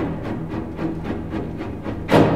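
Orchestral music: a quick repeated pulse, about five or six strokes a second, over held low notes.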